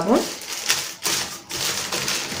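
Crumpled brown paper bag crinkling and rustling in irregular crackles as a hand opens it to take out a bar of soap.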